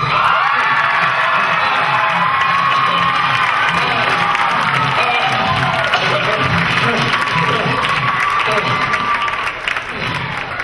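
Audience cheering, whooping and applauding loudly and steadily just after a song ends.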